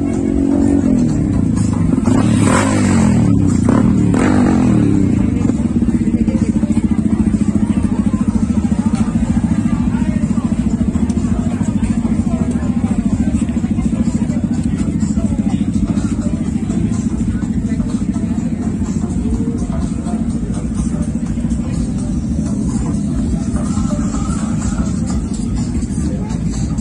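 Large motorcycle engine running with a steady pulsing drone, revved briefly a couple of seconds in, over background music and crowd chatter.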